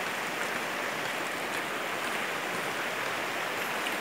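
Shallow rocky river running, a steady even rush of water.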